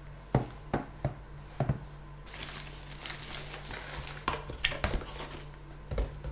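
A small plastic audio interface (Zoom U-24) handled and set down on a wooden table: about four sharp knocks in the first two seconds, then rustling, then a few more clicks a little after four seconds in, over a steady low hum.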